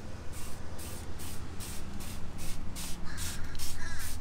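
Hand trigger sprayer on a bottle of Earth's Ally Disease Control being squeezed over and over, about three short hissing sprays a second, misting a plant-based fungicide onto bean vines against powdery mildew.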